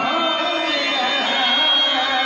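A man's voice singing a Telugu devotional bhajan into a microphone, the melody bending through wavy ornamented turns over a steady drone.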